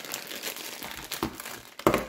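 Wax melt packaging crinkling as it is handled, with a couple of sharper clicks, the loudest near the end.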